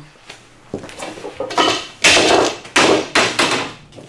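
A series of loud, irregular knocks and crashes, about five in four seconds: something being slammed down hard against the floor again and again.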